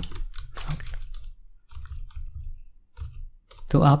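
Typing on a computer keyboard: a quick run of separate keystrokes, irregularly spaced.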